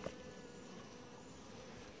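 Faint, steady buzzing of honeybees gathered on wet leaves to drink water.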